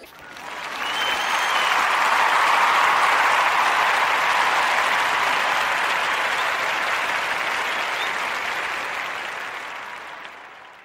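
Crowd applause that swells up over the first two seconds, holds, then slowly fades out near the end.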